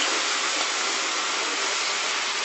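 Steady, even hissing background noise with no distinct events.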